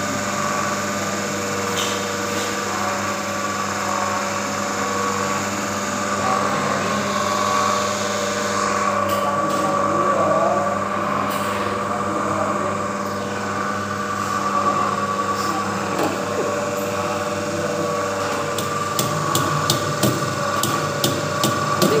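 Small electric motor running steadily at about 1200 rpm, a constant hum with a steady whine. Near the end a quick series of light clicks and taps comes on top.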